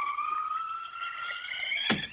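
Wind-howl sound effect: one long wail that rises slowly in pitch and then breaks off near the end.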